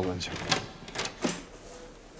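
A man saying "Sağ ol hocam", followed by three or four short, sharp taps.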